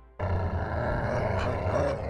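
A loud, harsh animal growl used as a logo sound effect, starting suddenly a moment in.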